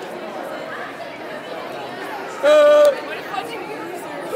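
Crowd chatter echoing in a large indoor hall, and about two and a half seconds in, one loud yell held on a steady pitch for about half a second.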